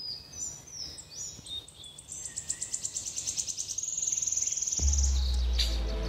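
Birdsong: high chirps and short sliding calls, then fast rapid trills. A deep bass tone comes in about five seconds in.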